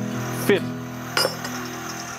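Robust Tradesman wood lathe running with a steady hum, and one sharp metallic clink about a second in as a copper water-pipe ferrule is tried against the freshly turned tenon of a tool handle.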